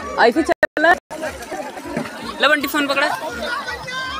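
Several people talking and calling out. The sound cuts out completely for a moment twice within the first second.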